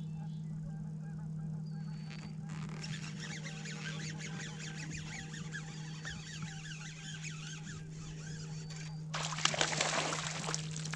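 A flock of geese honking for several seconds over a low steady hum. About nine seconds in, a hooked bass thrashes and splashes at the surface beside the boat.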